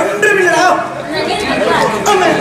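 Actors' stage dialogue: speech through microphones and a hall sound system, more than one voice.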